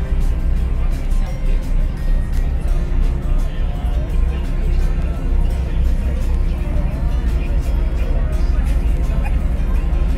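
Steady low drone of a passenger ferry's engines heard inside the cabin, with music and voices over it.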